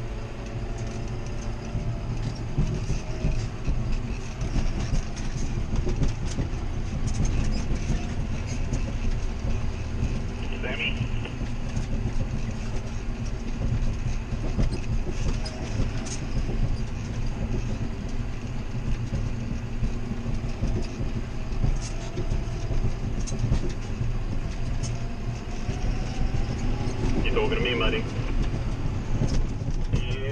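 John Deere 7530 tractor's six-cylinder diesel engine running steadily under load, heard inside the cab. Frequent short knocks and rattles come from the tractor bouncing over the rough stubble.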